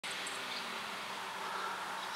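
Quiet outdoor ambience: a steady faint low hum over light hiss, with a couple of brief high chirps.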